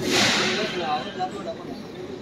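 A brief burst of rushing noise, loudest in the first half second and fading away within about a second, over faint voices in the background.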